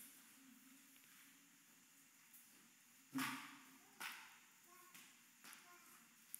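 Near silence: room tone, broken by a short rustle about three seconds in and a softer one a second later.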